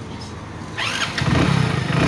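Hero Splendor Plus i3s FI BS6's single-cylinder fuel-injected engine being started about a second in and settling into a steady idle: the bike, brought in for starting trouble, starts after its general service.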